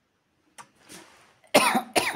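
A person coughs twice in quick succession, loudly, in the last half second, after a short intake of breath.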